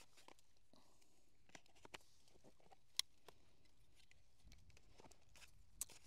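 Near silence, with a few faint clicks and taps from handling a sketchbook and sketching kit; the sharpest tap comes about three seconds in.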